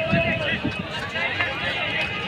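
Men's voices talking over the general chatter of a crowd.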